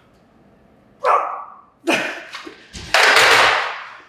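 A weightlifter's loud, forceful grunts and exhalations while straining through heavy barbell Romanian deadlift reps: short bursts about a second and two seconds in, then a longer, loudest one near three seconds.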